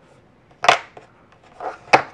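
Two sharp clicks about a second apart, with a softer one just before the second, from a metal hemostat as it is worked through a paracord bracelet.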